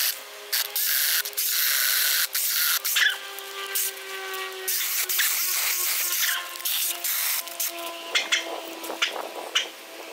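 Jeopace 6-inch battery-powered mini pruning chainsaw cutting through thin branches and brush: the small electric motor whines steadily while the chain rasps through the wood in a string of short, stop-start bursts.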